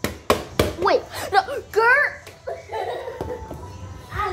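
Children's high-pitched voices, with exclamations and squeals that rise and fall in pitch. A few sharp knocks come in the first second.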